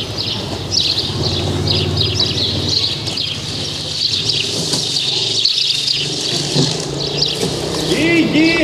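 Many small birds chirping busily, with a low steady hum and faint distant voices underneath.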